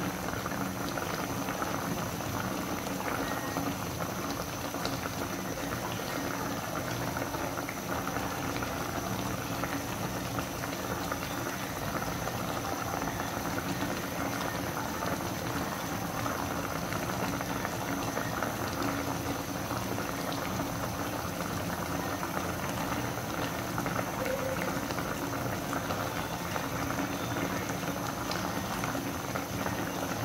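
Paksiw na galunggong, round scad with chilies and onion, boiling in its vinegar broth in a pan: a steady bubbling that does not change.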